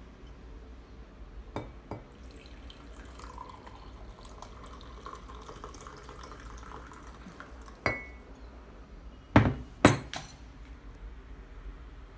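Hot tea poured from a ceramic teapot into a glass mug: a steady stream for about five seconds, with a faint tone that rises slightly as the mug fills. A light clink about eight seconds in, then two loud knocks half a second apart near the end.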